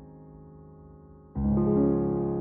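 Slow instrumental piano music: a held chord slowly fades, then a new, louder chord is struck about one and a half seconds in.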